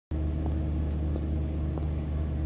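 Steady low rumble of urban traffic with a faint engine hum running through it.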